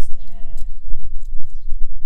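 A man's voice holding a short, level-pitched vocal sound for about half a second near the start, over a constant low rumble of wind on the microphone.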